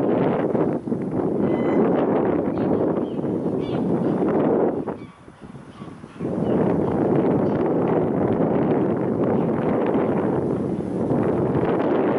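Gusty wind buffeting the microphone in a steady rush, with a sudden short lull about five seconds in before the gust returns.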